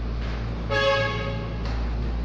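A single horn-like toot, one steady pitched note lasting just under a second, over a constant low hum.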